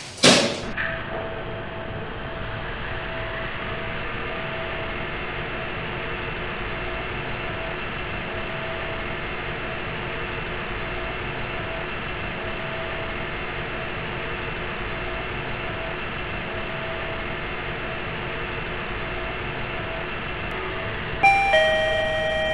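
Lift car travelling down: a thump right at the start, then a steady ride hum with a few held tones. Near the end an electronic arrival chime of several tones sounds.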